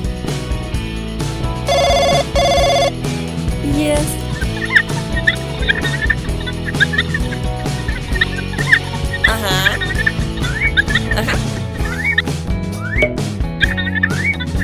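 Cartoon background music with an electronic mobile-phone ringtone sounding twice about two seconds in. Short squeaky cartoon voice chirps and babble follow over the music.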